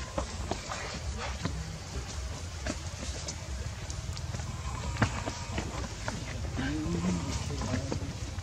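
Outdoor ambience: a steady low rumble with scattered light clicks, and a brief, faint voice-like gliding sound near the end.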